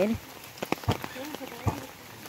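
Rain falling steadily, with several louder single drops landing close by.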